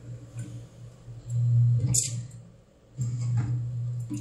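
Automatic bubble tea cup sealing machine running a manual-start sealing cycle with a steady motor hum. A sharp clack comes about two seconds in as the heated sealing head presses the PP film onto the cup, and the hum picks up again about a second later.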